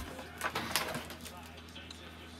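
Plastic and cardboard packaging crinkling and crackling as a drone's remote controller is pulled free of its box: a few sharp crackles in the first second, then quieter.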